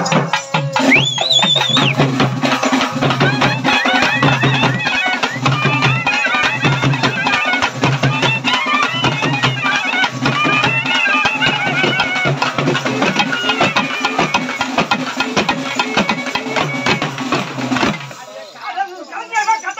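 Live Tamil folk music for karagattam dancing: large double-headed drums beat a steady, quick rhythm under a wavering melody line. A short, high, shrill tone sounds about a second in.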